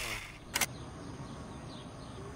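Intro music dies away with a falling glide at the very start, then a short sharp click about half a second in, followed by faint steady background noise.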